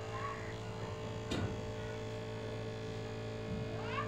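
Small motor of a homemade lantern-base fan running with a steady hum, with one sharp click about a second and a half in and a short rising sound near the end.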